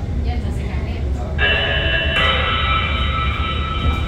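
Steady low hum of a stationary metro train car heard from inside, joined about a third of the way in by a loud held electronic chime that changes tone once halfway through and stops as the doors begin to open.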